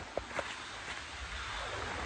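Steady rushing of a small rocky river through the woods, with a couple of faint taps near the start.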